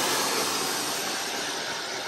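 Handheld hair dryer running, a steady whoosh of blown air with no pitch changes.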